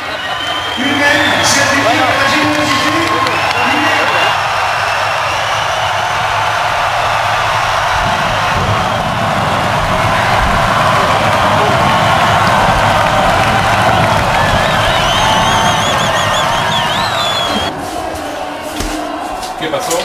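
A huge festival crowd cheering, a dense sustained roar with shrill whistles rising out of it, which drops away suddenly near the end.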